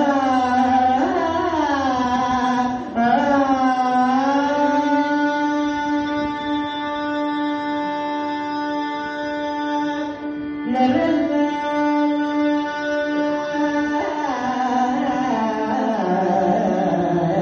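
Male Carnatic vocalist singing in raga Mohanam with violin accompaniment: sliding, ornamented phrases at first, then a long held note for several seconds, a brief break, and a second held note before moving phrases return near the end.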